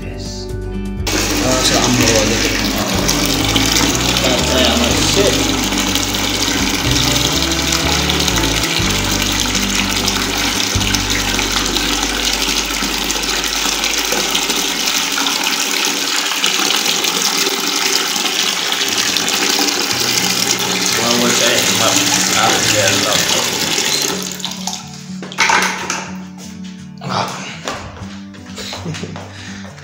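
Water pouring from a bathtub faucet into a plastic bucket, a steady rush that stops near the end. Music plays under it for the first half.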